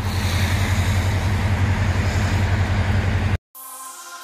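A steady low rumble of a car engine running with road noise while driving slowly. It cuts off suddenly about three and a half seconds in, and faint electronic music starts.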